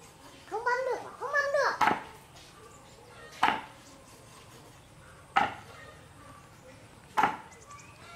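A cleaver chopping eel on a round wooden chopping board: four sharp single chops, roughly two seconds apart. Two short high-pitched rising-and-falling calls come near the start.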